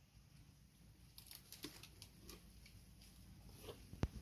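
Near silence: faint outdoor ambience with a scattering of soft small ticks.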